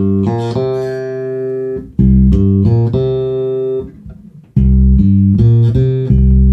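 Dingwall NG2 fanned-fret electric bass played through a Gallien-Krueger MB Fusion 800 amp and Bear ML-112 cabinet, with the onboard preamp's bass control boosted. Three short phrases of plucked notes, each ending on a held note, sounding clear and clean.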